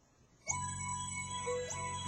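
Music starts about half a second in, played from a docked player through an iHome color-changing speaker dock: sustained chords, with a change of notes near the end.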